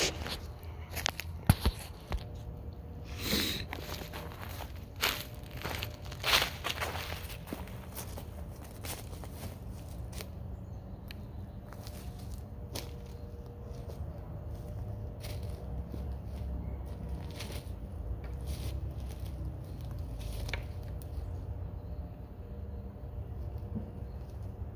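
Footsteps crunching through dry leaves and forest litter, with sharp crackles and knocks in the first several seconds, then sparser, quieter steps over a low steady background.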